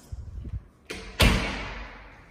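Interior door being swung shut, closing with a loud thump a little over a second in that fades out over most of a second.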